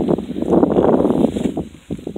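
Wind buffeting a phone's microphone: a rushing noise that swells about half a second in, lasts about a second, then fades.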